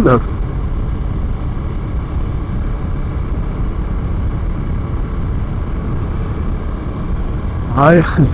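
Steady wind and road rumble while riding a Husqvarna Svartpilen 401 motorcycle at an even cruise, with its 399cc single-cylinder engine running underneath, unchanging throughout.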